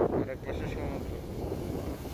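Wind buffeting the microphone in an unsteady low rumble, over the wash of waves breaking against concrete seawall blocks.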